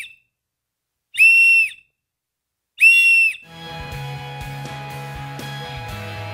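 S.O.L. Slim Rescue Howler pea-less plastic rescue whistle blown in short, steady, shrill blasts: the end of one blast, then two more about a second and a half apart, making up the three-blast distress signal. Music starts about halfway through.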